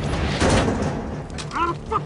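A loud boom over a low, pulsing trailer music beat, about half a second in, then a voice near the end.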